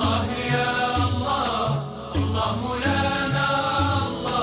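A men's ensemble singing an Islamic devotional song (inshad) together, over a low repeating bass line. There is a brief break between sung phrases about two seconds in.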